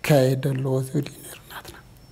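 Speech only: a man talking for about the first second, then a short quieter pause.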